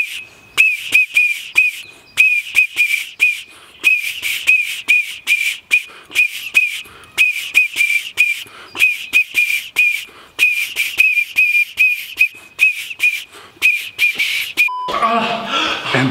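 Metal whistle blown in quick short toots at one high pitch, a few a second, in rhythmic runs with brief pauses; it stops shortly before the end.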